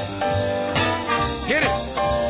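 Small jazz combo with horns, piano, bass and drums playing a steady, swinging dance groove, with one note that swoops up and back down near the end.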